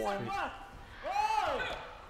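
A person's voice: a brief spoken burst, then about a second in a drawn-out call that rises and falls in pitch, in a large hall.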